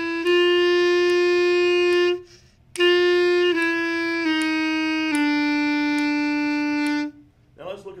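B-flat clarinet playing a slow, legato stepwise exercise: a long held G, a breath, then G, F sharp, F natural and a long final E stepping down, the last note ending about seven seconds in. The F sharps use the chromatic fingering (thumb plus two side keys) so the move between F and F sharp stays smooth, without an extra note.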